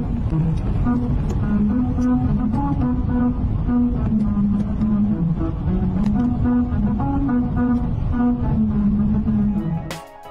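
Car tyres rolling over the grooved strips of a musical road, which play a low tune of stepped notes over steady road rumble, heard inside the car.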